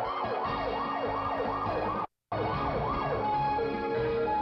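Siren sound effect wailing in fast rising-and-falling yelps, about two and a half a second, broken by a brief drop to silence about halfway through. Near the end it switches to a slower two-tone high-low pattern.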